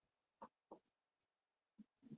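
Faint chalk strokes on a chalkboard as a short word is written: a few brief taps and scrapes.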